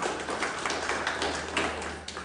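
Small audience applauding: many separate hand claps close together, dying away at the end.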